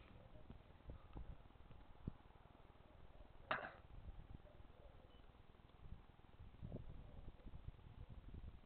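Near silence: the faint low rumble of a forest fire burning on a ridge about a mile off. A few faint clicks run through it, with one brief sharper sound about three and a half seconds in.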